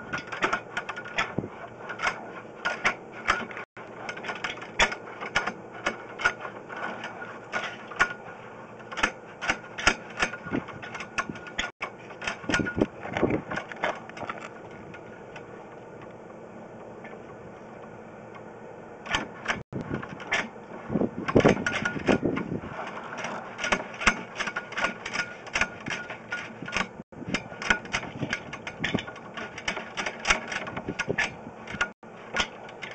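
Sewer inspection camera's push cable and reel being fed slowly down a drain vent, making irregular clicking and rattling, with two heavier spells of scraping rattle about halfway and two-thirds of the way through. The sound cuts out completely for a moment about every eight seconds.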